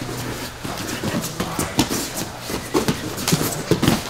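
Bare feet stamping, shuffling and slapping on grappling mats, with bodies scuffling against each other as two grapplers scramble through a standing takedown exchange. The knocks come irregularly, several a second, with louder thuds toward the end.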